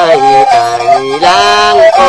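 Tai Lue khap (khap Lue) singing: one voice holding long, wavering, ornamented notes that slide between pitches, over a steady accompanying drone.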